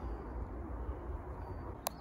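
Faint steady outdoor background noise: a low rumble with a light hiss, and one sharp click near the end.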